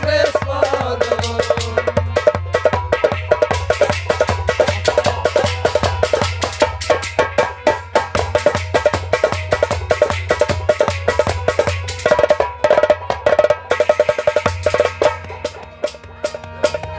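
Instrumental passage on a harmonium, its reeds holding a melody, over quick, steady strokes of hand percussion.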